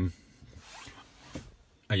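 Faint rubbing and handling noise from a hand on a car's plastic dashboard, with a single click about one and a half seconds in.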